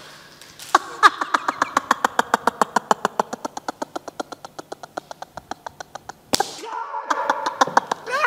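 Men laughing hard: a long, fast run of laugh pulses, about eight a second, fading over some five seconds, then a sharp slap and more laughter near the end.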